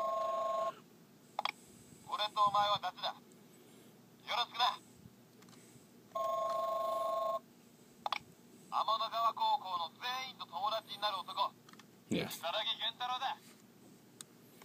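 Bandai DX NS Magphone toy phone calling: a steady electronic two-tone ring sounds briefly, then short recorded character voice messages play through its small speaker. The ring-then-message sequence happens twice.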